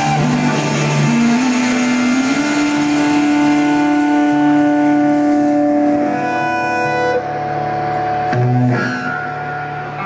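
Rock band playing live with electric guitars holding long sustained notes and chords, little drumming heard. The sound thins out and gets quieter over the last few seconds.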